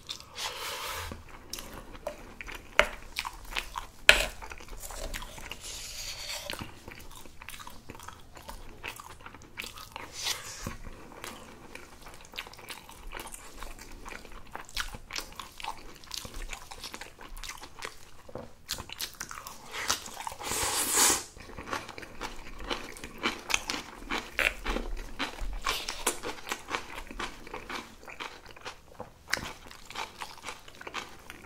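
A person eating close to the microphone: steady chewing with crunchy bites, as of kimchi, and wet mouth sounds, broken by a few sharp clicks early on and a louder, longer crunch about two-thirds of the way through.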